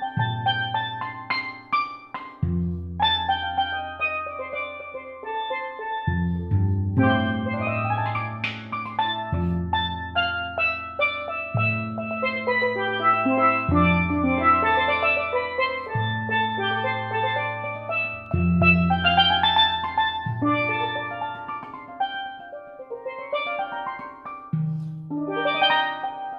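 Steelpans built by Steve Lawrie, played with five mallets in a solo improvisation of modal ninths and sus chords. Quick runs of ringing higher notes sound over sustained low notes that change about every two seconds.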